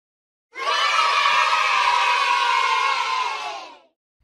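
A group of children cheering together, starting about half a second in and lasting about three seconds before fading out.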